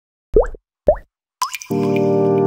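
Intro sting: three short plops, each rising quickly in pitch, the third higher than the first two, then a held chord of steady tones comes in about three quarters of the way through and carries on.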